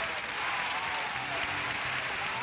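Studio audience applause, steady throughout, with low sustained musical notes coming in about a second in.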